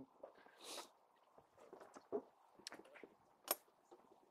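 Faint footsteps on pavement and a few light clicks, the sharpest about three and a half seconds in as the latch of a motorhome's exterior storage bay door is released.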